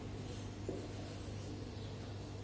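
Marker pen rubbing across a whiteboard as a word is written, faint, over a steady low hum.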